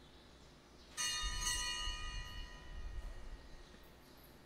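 A bell struck once about a second in, its several high ringing tones fading away over about two seconds, with a low rumble beneath; rung just before the call to stand, it signals the start of Mass.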